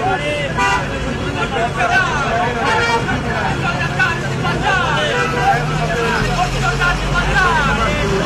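Crowd babble, many men talking at once in a busy street, with a large vehicle's engine running close by, its low hum steady through the middle and deepening near the end.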